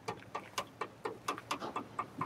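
Rapid, regular ticking, about four ticks a second.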